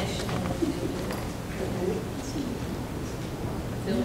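Indistinct low murmur of several people talking quietly among themselves across a room, with no single voice clear.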